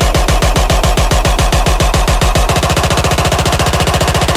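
Dubstep build-up: a rapid roll of hard, bass-heavy drum hits, about eight a second, doubling in speed about halfway through.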